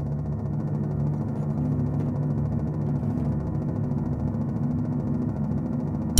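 Free-improvised drone: steady low tones over a grainy rumbling from a small cymbal pressed and rubbed across a snare drum head, together with guitar and electronics. No distinct strikes.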